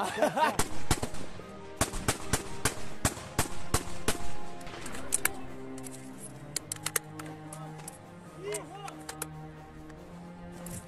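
Close small-arms gunfire: a dense, irregular run of shots for about the first five seconds, thinning to scattered single shots later, with a few brief shouted voices.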